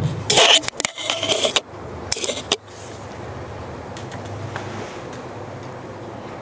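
Two loud stretches of rustling, scraping noise close to the microphone in the first two and a half seconds, then a low steady room hum.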